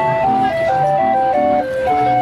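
Small hand-cranked Dutch street organ (draaiorgel) playing a tune: a stepping melody over a regular bass-and-chord accompaniment.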